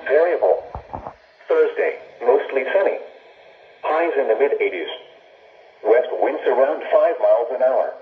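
NOAA weather broadcast read by an automated voice through a Midland weather alert radio's small speaker, in short phrases with pauses, thin-sounding with no high end. A brief low thump about a second in.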